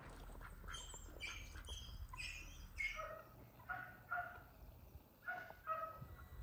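Domestic ducks quacking: a series of about a dozen short calls, higher at first and lower later, with a pause before the last few near the end.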